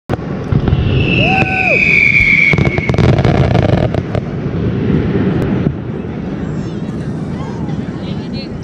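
Fireworks going off in rapid crackling pops, densest in the first half and easing off after about five and a half seconds, with a long falling whistle near the start. People talk underneath.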